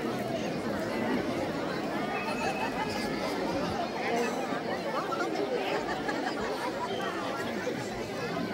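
Crowd chatter: many overlapping voices talking at once, steady, with no single clear speaker.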